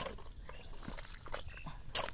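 A hoe blade chopping into wet, sloppy mud: a sharp wet smack at the start and another near the end, with softer squelching of the mud as the blade is worked in between.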